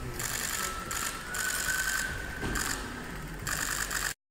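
Many press cameras' shutters clicking in several rapid bursts, the photographers firing away at a posed handshake.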